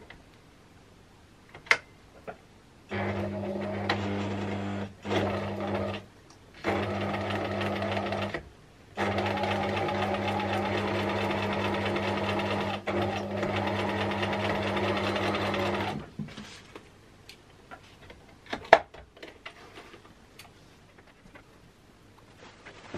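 Freshly serviced Bernina 1008 sewing machine stitching in four runs, starting about three seconds in, with short stops between, the last run about seven seconds long. It then stops, followed by a few small clicks and taps and one sharp click.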